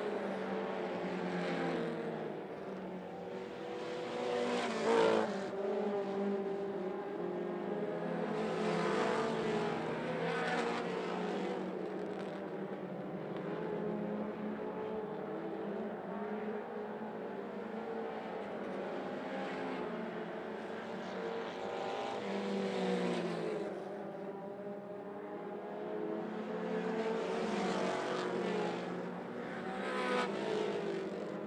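Several four-cylinder mini stock race cars running at racing speed around a dirt oval, their engines swelling and fading as cars pass close by, the loudest pass about five seconds in.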